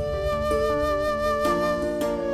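Background score music: a flute holds one long note over sustained lower notes that shift a couple of times.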